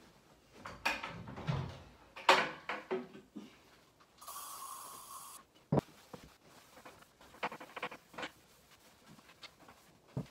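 A wooden armoire being opened and handled: a run of knocks and clicks, the loudest about two seconds in, then a scraping sound lasting about a second, a sharp click just before the middle and lighter clicks after it.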